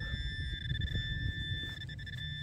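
A metal detector's steady, high electronic tone held unbroken, the signal of metal close under the coil, over a low rumble.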